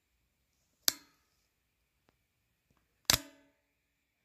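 Two sharp knocks of the cardboard advent-calendar box being handled, about two seconds apart, the second followed by a brief ringing.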